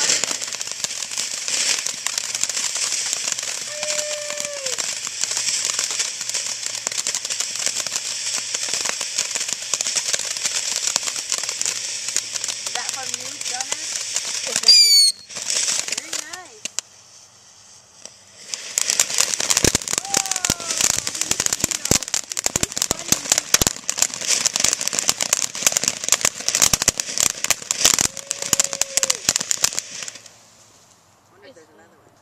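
Ground fountain fireworks spraying sparks: a steady hiss with crackling, and a short high whistle about halfway through. After a brief lull the fountain goes on again with dense, rapid crackling.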